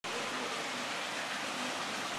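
Steady rushing of moving water, an even hiss without any rhythm or distinct splashes.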